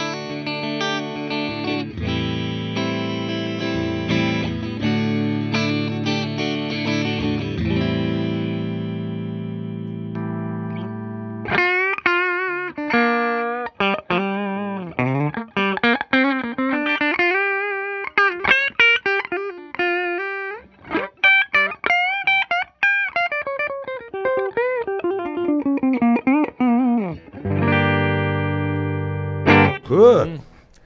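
Sterling by Music Man Axis AX3FM electric guitar through a Fender Twin Reverb amp on a clean tone, played on the inner-coil pickup setting. It opens with ringing chords for about ten seconds, then moves into a single-note lead line with string bends and vibrato, and returns to sustained chords near the end.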